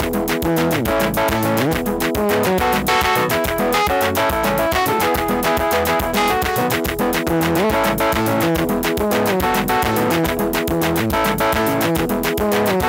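Portable electronic keyboard playing a fast, guitar-like melody with pitch glides over a bass line and a steady beat, in the igisirimba style.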